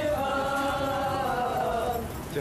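A group of voices chanting in unison, holding one long line that slowly falls in pitch.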